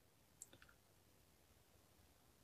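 Near silence in a pause between speech, with one faint short click about half a second in.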